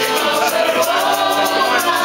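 A group of people singing together to an acoustic guitar, with a pair of wooden maracas shaken in a steady quick rhythm.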